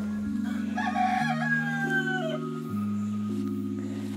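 A rooster crowing once, starting about half a second in and lasting nearly two seconds, over background music.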